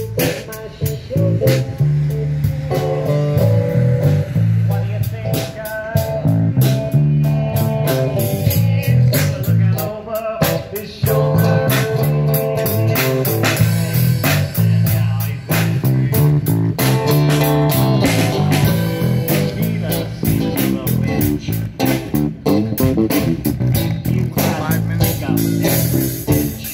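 Live band playing with nylon-string acoustic guitar, electric bass and drum kit, the bass line moving under steady drum strokes.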